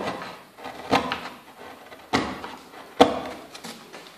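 Hand carving chisel cutting into soft wood-pulp ornament, three sharp strokes about a second apart, the last the loudest.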